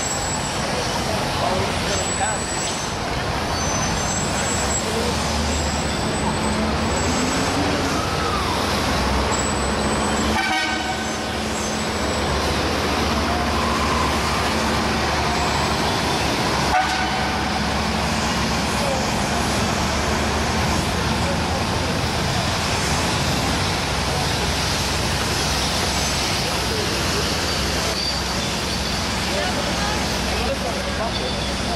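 Busy city-street ambience: vehicle engines and traffic running under the voices of a crowd, with short high toots scattered through the first ten seconds. The sound breaks off abruptly at about ten and seventeen seconds in as the scene changes.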